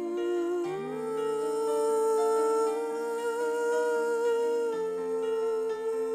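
Slow worship music: a woman's voice slides up into one long held note about a second in, over sustained chords played on a Yamaha S90 XS keyboard.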